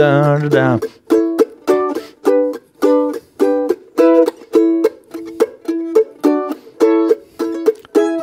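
F-style mandolin comping chords in A: short, evenly spaced chord strokes, about three a second, at a steady tempo. A brief voice comes first.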